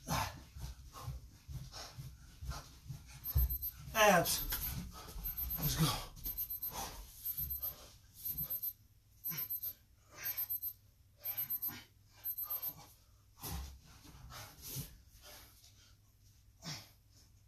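A man panting hard after a round of mountain climbers, quick rhythmic breaths in and out. About four seconds in there is a drawn-out groan that falls in pitch, the loudest sound here.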